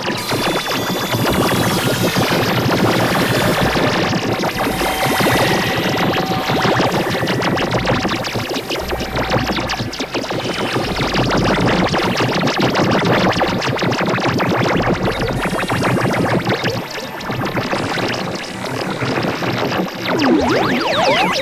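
Experimental electronic noise music from synthesizers: a dense, crackling, fast-flickering texture with a few held tones, steady in loudness throughout, with heavier low bursts in the middle.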